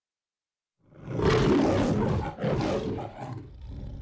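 The MGM studio logo's lion roar: after a second of silence the lion roars twice, the first roar longer than the second, then growls low.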